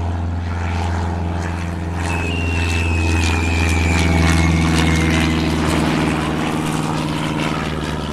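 Propeller airplane engine drone, steady and low, swelling a little midway, as for a small plane flying past. A thin whistle falls slowly in pitch over about three seconds in the first half.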